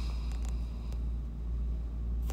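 A steady low rumble, with no other clear event.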